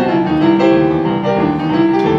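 Digital piano played in boogie-woogie, rock-and-roll style, a steady stream of bass notes and chords from both hands with no break.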